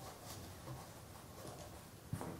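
Faint handling noise from fingers unscrewing a small threaded hose collar on a methanol injector fitting, a few soft small clicks and rubs over quiet room tone.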